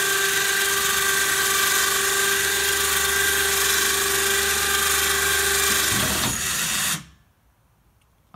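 Electric winch motor whining steadily as it pays out cable, lowering a homemade rear-mounted snow blade to the ground. The whine stops abruptly about seven seconds in.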